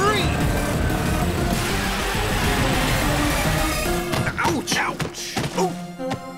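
Cartoon action sound effects over background music: a dense, steady rush, like a sustained gun blast, for about four seconds. Then a few separate thumps with short voice sounds near the end, as the characters crash to the ground.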